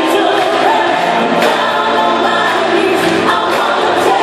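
Live pop concert music with singing, loud and steady, recorded from among the audience in a reverberant arena.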